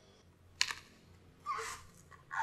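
A large knife chopping into the husk of a young green coconut: one sharp chop a little over halfway into the first second, then a softer slicing stroke near the end.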